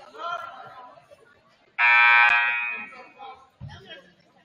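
Basketball gym's scoreboard horn sounding once: a loud buzz that starts abruptly about two seconds in, holds for about half a second and then fades.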